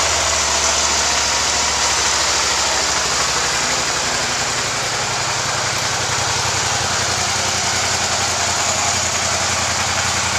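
A 2007 Suzuki SV650S's 645 cc V-twin engine idling steadily.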